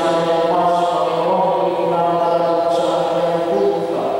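A priest chanting a prayer into a microphone, holding one reciting note almost without a break, with small shifts in pitch about half a second in and near the end.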